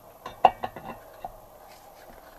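Hands taking hold of a Vespa engine's flywheel to turn the crank: a quick run of light metallic clicks and knocks in the first second, the loudest about half a second in.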